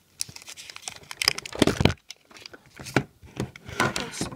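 A sheet of paper being folded and creased by hand: irregular crinkling and rustling, loudest between about one and two seconds in.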